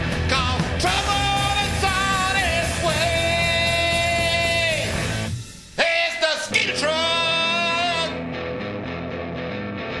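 Rock song with a singer over electric guitars, bass and drums. About five seconds in the band briefly drops almost out, comes back with a loud hit and a sung line, and after about eight seconds the singing stops and the band carries on more quietly.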